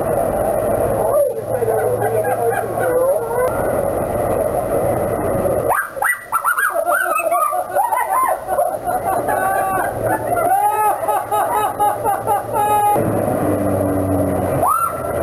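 Indistinct voices of passers-by talking over steady street background noise.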